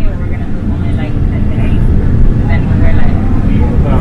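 Steady low rumble of a moving tour coach, its engine and tyres heard from inside the cabin, with faint voices over it.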